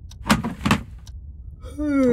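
Three short sharp clicks as a car's inner door trim panel is pulled loose, then near the end a man lets out a long, loud cry that falls in pitch.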